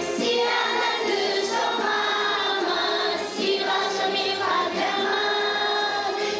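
Children's choir singing together in long held notes that move to a new pitch every second or so.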